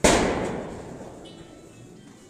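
A single sudden loud bang with an echoing tail that dies away over about a second.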